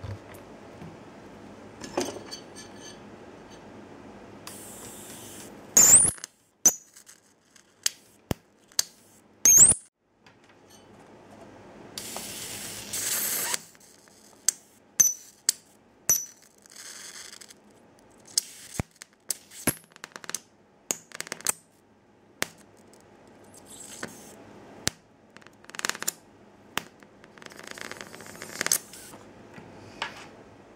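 High-voltage sparks from a flyback transformer driven by a 48-volt ZVS driver: irregular sharp snaps and crackles as arcs jump, with a few louder bursts and one drawn-out hissing arc about halfway through.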